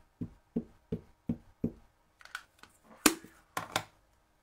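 An ink pad tapped onto a clear stamp on an acrylic block, six soft thuds about three a second; then a few sharper clacks as the acrylic block is handled, the loudest about three seconds in.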